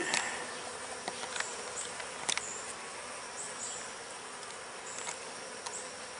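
Honey bees humming steadily around an open hive's frames, with a short sharp click about two seconds in.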